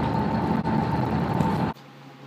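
Passenger bus cabin noise: the steady rumble of the running bus with a steady whine above it. It cuts off suddenly near the end.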